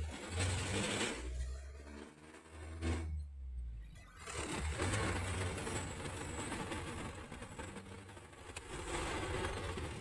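Engine and road noise of a manual-transmission truck heard inside the cab while it is driven and shifted through the gears, with a brief dip in the engine sound about three seconds in.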